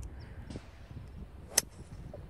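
One sharp click of a 4-wood striking a golf ball about one and a half seconds in, a topped shot, over faint outdoor wind noise.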